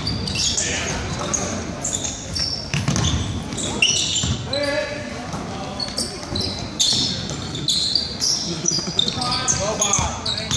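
Basketball game in a large gym: sneakers squeaking sharply and often on the hardwood court while a ball is dribbled, with spectators' chatter and shouts echoing in the hall.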